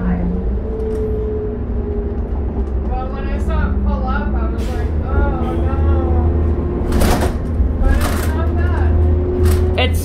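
2006 New Flyer D40LF diesel city bus heard from inside while driving: a steady low engine and road rumble with a whine that slowly falls in pitch over the first couple of seconds, and a few sharp rattling hits about seven and eight seconds in. The engine sounds healthy.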